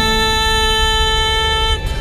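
A steady, horn-like tone held with several pitches stacked together over a low pulsing beat, cutting off suddenly just before the end.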